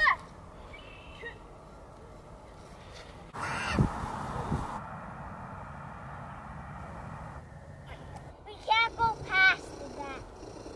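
An animal calls three times in quick succession near the end, short pitched calls close together. Earlier there is a brief burst of rustling noise with a couple of low thumps about three and a half seconds in.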